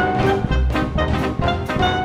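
A small New Orleans–style swing jazz band playing an instrumental passage: trumpet and trombone hold notes over a steady drum beat and a walking double bass.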